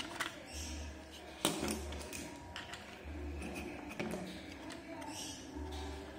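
Small plastic clicks and taps as a digital multimeter's circuit board and plastic case are handled for reassembly, with one sharper tap about a second and a half in.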